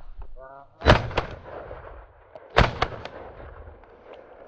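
Two shotgun shots a little under two seconds apart, each followed a moment later by a fainter crack and a trailing rumble across open country.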